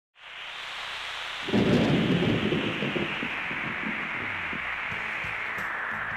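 Steady heavy rain with a clap of thunder about a second and a half in, its low rumble fading over the next couple of seconds while the rain goes on.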